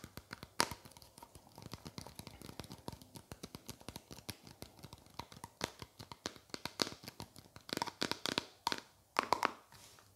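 Fingertips and nails tapping and scratching a small clear plastic container in quick irregular taps, with louder bursts of plastic crinkling around eight and nine seconds in.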